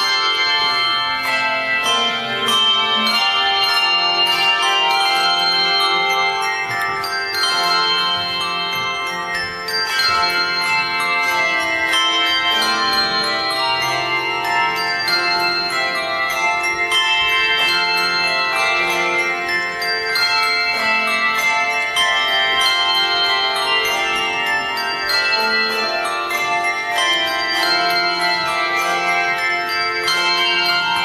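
Handbell choir playing an arrangement of a traditional French carol, many tuned handbells struck and ringing together in chords over lower bass bells.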